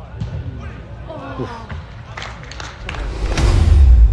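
Ball kicks and players' shouts echoing in an indoor soccer hall, with several sharp thuds in the middle. Near the end a loud swelling whoosh with a deep rumble rises to a peak: the sound effect of a logo transition.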